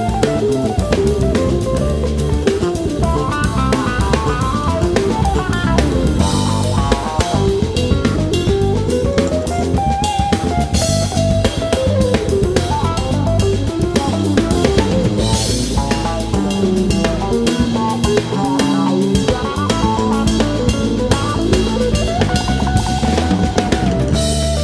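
A jazz-rock trio playing live: an electric guitar plays fast runs of notes that climb and fall, over bass and a busy drum kit. Cymbal crashes ring out several times.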